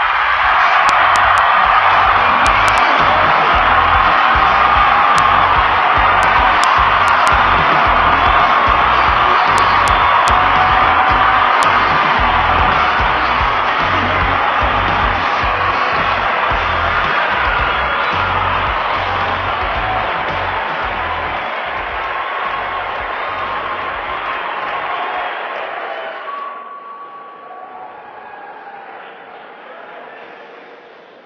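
A large audience cheering and applauding loudly, with low thumps underneath; the cheering drops away sharply about 26 seconds in and tails off.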